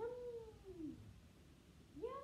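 A cat meowing once: a single call that rises and then falls in pitch, lasting just under a second.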